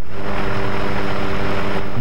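Aircraft engine droning steadily at an even, unchanging pitch.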